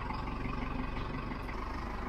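Step-van bread truck's engine running steadily at low speed, heard from inside the cab.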